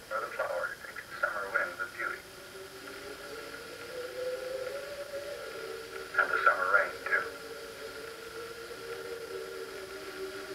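Thin, radio-like soundtrack of an old narrated nature film: short spoken phrases in the first two seconds and again about six seconds in, over sustained music notes that slowly rise and fall between them.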